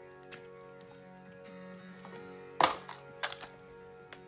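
Gentle background music with sustained notes, and a sharp click about two and a half seconds in followed by a few smaller clicks, from small objects being handled.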